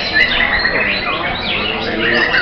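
Several white-rumped shamas (murai batu) singing at once: a dense, overlapping tangle of whistles, trills and quick rising and falling notes, with people talking in the background.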